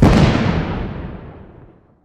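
Closing hit of an electronic intro theme: one loud crash-like boom right at the start that dies away over about two seconds.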